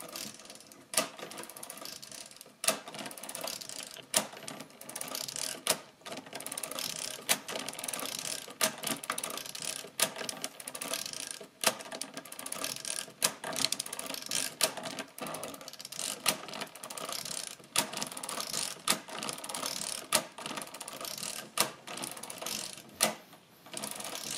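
Mercedes-Euklid Model 29 mechanical calculator, casing off, worked turn after turn by its hand crank. Its proportional-lever toothed racks and gears rattle through each cycle, with a sharp clack about every second and a half.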